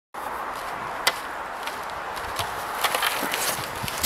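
Steady outdoor hiss on a camera microphone, with a sharp knock about a second in and a few lighter clicks and scrapes later: a snowboarder shifting his board on a wooden ramp deck before dropping in.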